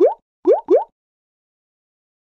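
Three quick rising 'bloop' pop sound effects of an animated end card: one at the start and two in quick succession about half a second in.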